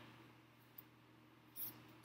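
Near silence: room tone with a faint steady low hum, a tiny tick a little under a second in and a short faint sound near the end.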